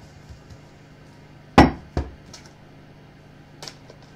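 A tarot deck handled against a table: two sharp knocks, the first and loudest about a second and a half in, the second just after, then a few light clicks as a card is drawn.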